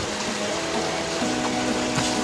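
Background music of sustained notes that change pitch in steps, over the steady rush of flowing creek water.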